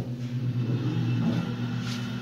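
Elevator car running: a steady low hum.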